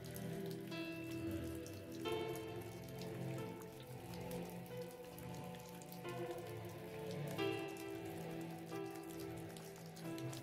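Slow, soft ambient music of held chords, with new notes coming in every few seconds, laid over a steady recording of rain falling.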